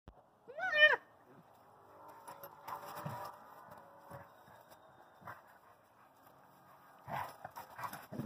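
A dog at play gives one short, high, rising-and-falling yelp about half a second in. After it come quieter scuffling and rough, low noises as a basset hound puppy and a chocolate Labrador tussle.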